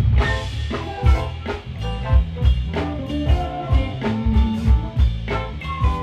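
Live band playing an instrumental smooth-jazz tune over an outdoor PA: a drum kit keeps a steady beat of about two strikes a second under bass, electric guitar and keyboards.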